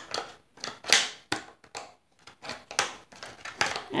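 Scissors snipping through a thin plastic tray: a run of irregular sharp snips and crackles with short quiet gaps between them.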